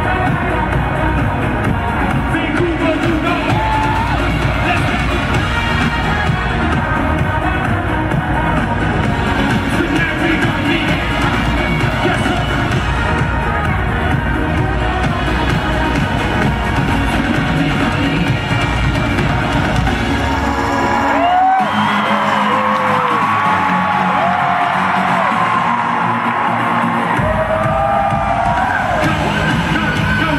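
Live dance-pop music played loud through an arena PA and heard from the audience, with a driving, bass-heavy beat. About 21 seconds in the bass drops out for a breakdown of several seconds with gliding high notes, and the full beat comes back near 27 seconds.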